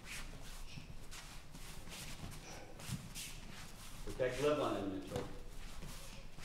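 Bare feet shuffling and stepping on padded training mats as boxers move around in a slipping drill, with scattered soft taps. A short stretch of voice comes in about four seconds in and is the loudest sound.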